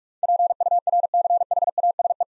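Morse code sent at 45 words per minute: a single steady mid-pitched tone keyed on and off in rapid dots and dashes, spelling the word "purchase".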